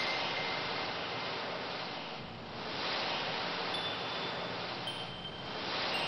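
Ambient music: a wash of surf-like noise swelling and fading about every three seconds, with a few sparse, high, bell-like chime notes ringing over it, one at the start and three more in the second half.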